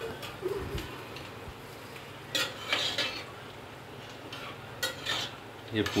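A metal ladle scraping and knocking against the inside of an aluminium pressure cooker as the cooked yam curry is stirred and scooped, in two short bouts, the second near the end.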